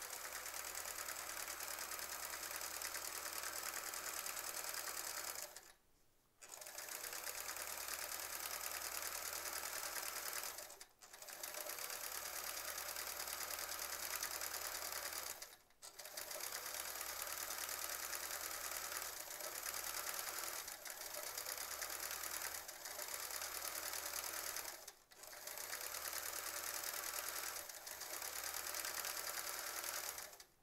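Sewing machine stitching during free-motion quilting, running steadily for stretches of four to nine seconds and stopping briefly about four times as the quilt is repositioned.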